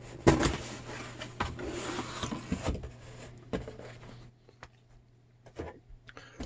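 A cardboard mailer box being opened by hand: scraping and rustling cardboard with a few knocks as the lid comes up and the packing is lifted out. It goes quiet after about four seconds, leaving a few faint taps.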